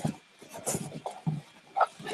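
A few short rustles and knocks as a box of packed beer bottles is rummaged through.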